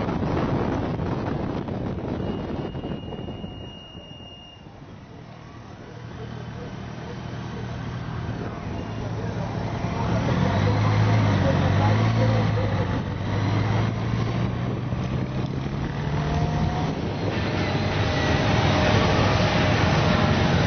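Wind rushing over the microphone of a moving motorcycle, easing off a few seconds in. Then motorcycle engines grow louder, their pitch rising and falling as the bikes accelerate and slow in a group ride.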